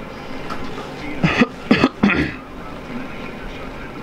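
A person's voice, briefly, a little over a second in, over steady background noise.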